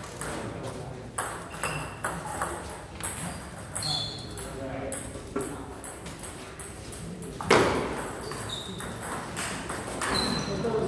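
Scattered sharp clicks of table tennis balls bouncing, some with a brief high ring, over a murmur of voices in the hall. A louder noisy burst comes about seven and a half seconds in.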